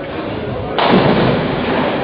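Ninepin bowling ball crashing into the pins: a sudden loud clatter about a second in that carries on for about a second.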